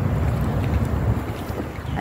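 Wind buffeting a handheld phone's microphone: a loud, uneven low rumble that dips slightly near the end.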